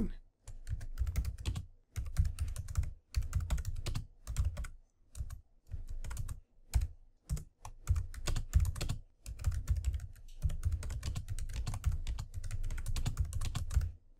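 Typing on a computer keyboard: quick runs of key clicks broken by short pauses between words and lines.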